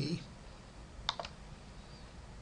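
Two quick clicks a fraction of a second apart, about a second in, over faint room tone, as the presentation slide is advanced.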